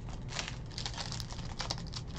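Panini Revolution basketball trading cards being flicked through and dealt onto a stack by hand: a string of quick, irregular light clicks and snaps of card stock.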